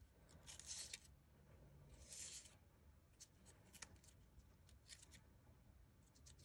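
Near silence, with two faint, brief rustles and a few light clicks from hands handling the paper craft.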